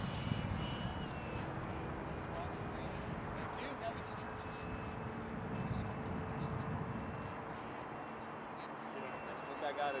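Electric ducted fan of a SebArt Fiat G.91 90mm EDF foam model jet in flight, heard as a thin high tone over a steady haze of air and field noise. The tone drops in pitch about a second in and comes back later.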